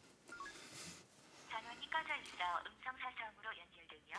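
Mobile phone call audio through the earpiece: a few faint beeps early on, then from about a second and a half in a thin, telephone-quality stream with the rhythm of speech as the call is placed.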